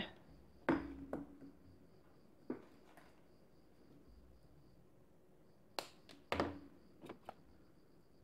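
Faint, scattered clicks and rustles of a flexible electrical cord being handled. About six seconds in come two sharper snips as one wire of the cord is cut through.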